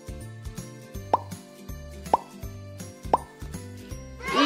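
Light background music with a repeating bass pattern, over which a cartoon 'plop' sound effect rises quickly in pitch three times, about a second apart; these plops are the loudest sounds.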